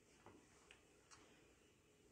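Near silence: room tone with a few faint, short clicks in the first second or so.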